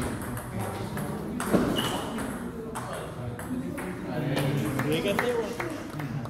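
Table tennis ball being hit back and forth in a rally: a few sharp clicks of ball on bat and table, the loudest about a second and a half in. Voices follow in the second half.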